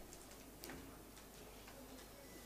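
Near silence: faint room tone with a few weak, short clicks.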